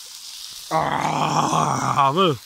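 A man's loud, rough growling yell, starting about two-thirds of a second in and held at one pitch for over a second.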